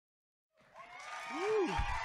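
Dead silence for about half a second at an edit, then audience applause and cheering fade up, with a short rising-and-falling vocal call about one and a half seconds in.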